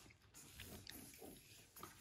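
Near silence: room tone with a few faint, soft small noises.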